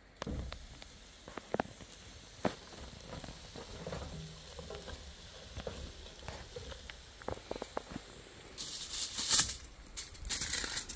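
Entrecôte steak sizzling on a hot charcoal grill grate, a steady hiss that starts as the meat goes down, with scattered light clicks and knocks. Near the end, a loud crinkle of aluminium foil.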